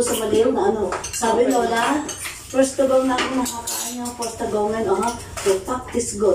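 Cutlery clinking against dishes and pots while people talk at the table.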